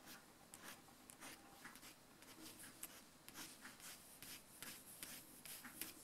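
Faint scratching of a fibre-tip pen on paper, making quick short strokes, several a second.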